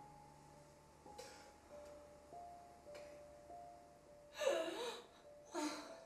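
Quiet film score of slow, held notes, with a woman crying over it: a short breath about a second in and two loud, wavering sobs near the end.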